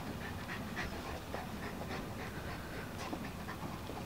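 A large dog panting in quick, faint, even breaths.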